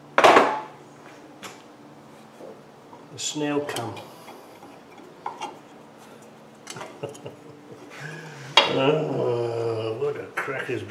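A loud, ringing metal clank just after the start, then a few light metallic clicks and taps as the steel shoes and return springs of a Land Rover rear drum brake are worked on by hand and tool.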